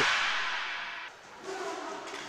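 Echoing sports-hall noise on an inline hockey rink, dying away over about a second, then faint indistinct pitched sounds near the end.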